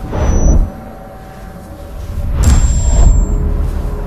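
Horror-show intro sound effects: a deep booming rumble at the start that cuts off after about half a second, then a second low rumbling swell building about two seconds in, each with a thin high whine over it.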